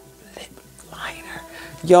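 Soft, breathy whispered voice sounds from a woman over faint background music; her full speaking voice comes back loudly near the end.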